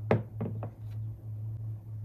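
A china plate set down on a desk: one sharp knock, then two lighter knocks over the next half second as it settles, and a faint click a little later.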